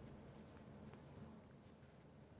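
Near silence, with faint rustling and scratching as string is knotted around a steel ruler lying on a shirt sleeve.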